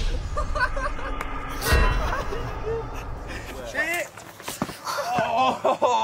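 Voices without clear words, with a sharp thump just before two seconds in.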